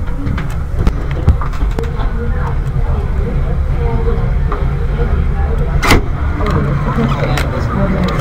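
Handling noise from a camera being moved and rubbed: a heavy low rumble with scattered clicks and one sharp knock about six seconds in. Under it is muffled crowd chatter.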